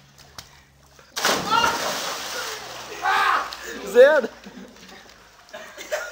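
A person belly-flopping into a swimming pool: a sudden loud splash about a second in, followed by water sloshing and onlookers shouting.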